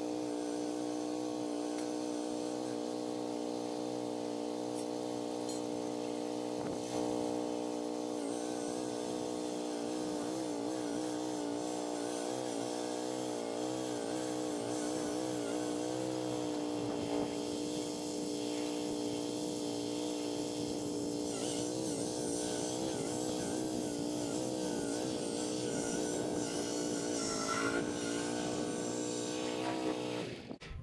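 Zero-turn riding mower engine running at a steady speed while towing a loaded boat trailer, its pitch wavering slightly now and then under the load.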